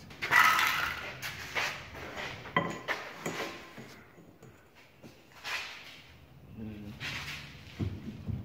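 Steel pry bar levering the rusty, bent wheel-arch sheet metal of a ZAZ-965 Zaporozhets, straightening the body panel by force. It comes as a series of separate scrapes and creaks of strained metal, the loudest about half a second in.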